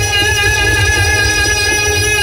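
Qawwali ensemble music: sustained instrumental notes held steady over a low, steady drum beat, between sung phrases.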